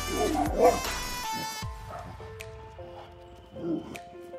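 A dog barking: a short run of barks in the first second, the loudest sound here, and another bark near the end, over background music.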